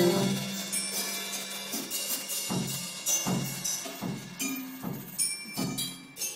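Live band music heard from the audience: a held chord dies away at the start, then loose, scattered drum hits carry on more quietly.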